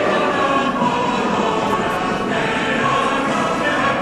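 Choral music: many voices singing long, overlapping held notes at a steady level.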